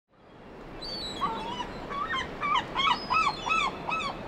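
An animal's short high calls, each rising and falling in pitch, repeated more and more often until they come about four a second in the second half, over a steady low hiss.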